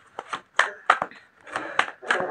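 Tarot cards being shuffled and handled by hand: a run of irregular sharp snaps and flicks, with a brief rustle near the end.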